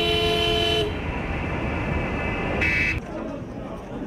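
Car horns honking in a street motorcade. One long steady horn blast stops about a second in, traffic noise follows, and a second short honk sounds near the three-second mark.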